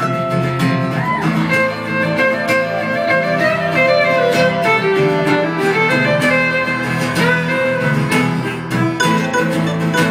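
Fiddle playing a melody line over strummed acoustic guitar and mandolin in a live folk band's instrumental break, with no singing.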